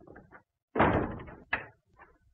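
A door slamming shut, with a second sharp knock about half a second later.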